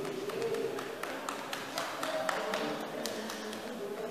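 A quick, irregular series of light taps and clicks, with a faint voice underneath.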